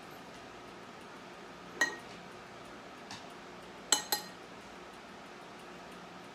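Metal spoons clinking against a ceramic bowl while stirring a thick cream cheese and shredded cheese mixture. There is one clink about two seconds in, a faint one a second later, and a quick pair near the fourth second, each ringing briefly.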